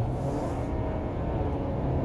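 Interior cabin noise of a 2021 Toyota Sienna hybrid minivan cruising at highway speed: a steady low hum of road and drivetrain noise.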